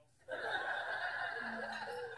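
Laughter, starting a moment in and lasting a little under two seconds.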